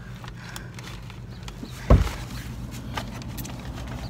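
Steady low hum inside a car, with one dull thump a little under two seconds in.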